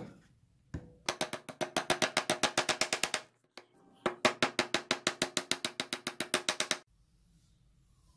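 Small hammer tapping rapidly on the metal pins through a knife handle, peening them over: a couple of single knocks, then two runs of quick ringing taps, about nine a second, with a short pause between.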